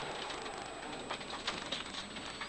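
Cabin noise inside a rally car on gravel as it slows for a hairpin: a steady rush of tyre and road noise with a few sharp ticks of stones against the body.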